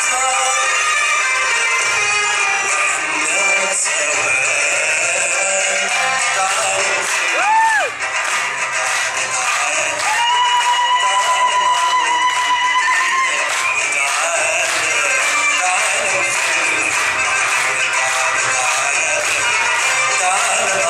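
Belly dance music with a steady, quick beat; a brief sweeping note comes about seven seconds in, then a long held note for a few seconds.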